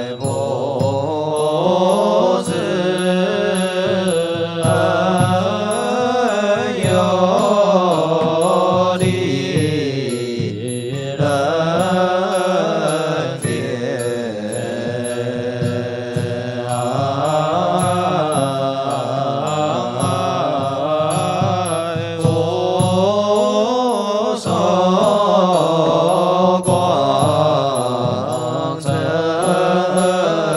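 Group of Buddhist monastics singing fanbei liturgical chant in unison, in long drawn-out melodic notes.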